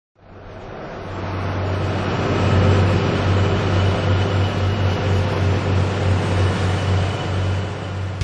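A motor vehicle's engine running steadily with road noise: a loud low hum under a broad rush. It fades in over the first two seconds or so and holds.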